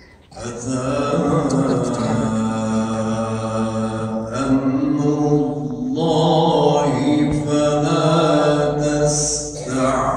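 A man reciting the Quran in a melodic chanting voice into a microphone, holding long drawn-out notes. The phrase starts about a third of a second in, with short breath pauses about four and six seconds in.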